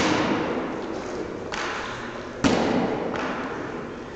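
Medicine ball striking a wall during wall-ball shots: two loud thuds about two and a half seconds apart, each ringing on in a large, echoing hall, with a softer thump between them.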